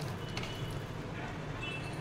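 Low steady room hum with faint, soft handling sounds of spiced soya chaap pieces being mixed by hand on a plate.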